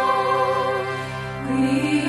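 Sacred chant sung in long held notes over a steady low drone, with a new lower note entering about a second and a half in.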